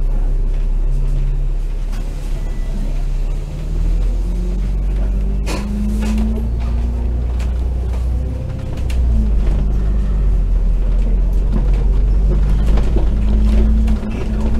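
Double-decker bus's diesel engine and drivetrain running under way, heard inside the cabin: a loud low drone with a droning tone that steps up and down in pitch as the bus speeds up and slows. A sharp knock or rattle about five and a half seconds in.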